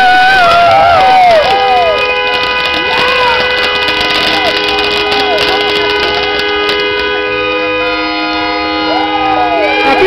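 A horn held down, sounding one long steady chord of several tones from about a second and a half in until it stops near the end. People shout and cheer over it, and fireworks crackle.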